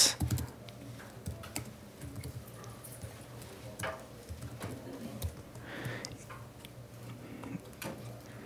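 Faint, scattered keystrokes on a computer keyboard as a short command is typed, isolated clicks spaced irregularly, over a low steady hum.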